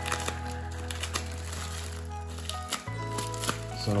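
Background music with sustained low notes, over which a plastic shipping bag crinkles and crackles as it is handled and cut open with small pocket-knife scissors.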